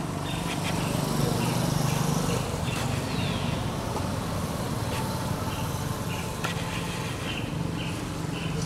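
A motor vehicle's engine running with a low hum that swells for the first couple of seconds and then eases off. Over it, insects chirp in short repeated pulses.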